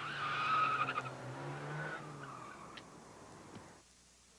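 A car engine running under a squeal of tyres. The sound is loudest about half a second in and fades away near the end.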